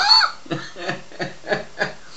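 A man chuckling: a brief voiced laugh with falling pitch at the start, then a run of short, soft chuckles about three a second.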